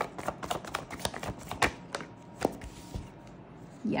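Tarot cards being shuffled and handled: a quick, irregular run of light flicks and snaps that thins out after about two and a half seconds.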